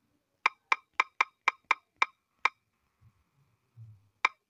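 Typing on a smartphone's on-screen keyboard: eight short key-press clicks in quick succession over about two seconds as a password is entered, then a pause.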